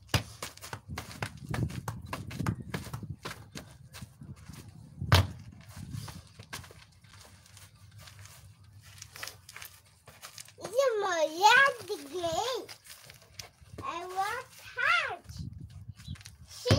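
Scattered knocks and taps as footballs are handled and bumped about on artificial grass, with one loud thump about five seconds in. In the second half a toddler makes high-pitched wordless vocal sounds, twice.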